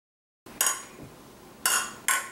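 Stemmed beer glasses clinking together in a toast: two sharp clinks about a second apart, starting after half a second of silence.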